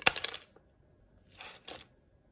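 Two short clusters of small, sharp clicks and clinks, about a second apart; the first starts with the loudest click.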